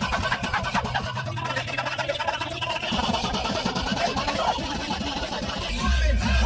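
Car engine running, heard from inside the cabin as a steady low hum, with knocks and rustling from the phone being moved around.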